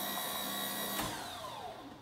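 A small electric motor whining steadily at a high pitch, switched off about a second in and winding down with a falling whine.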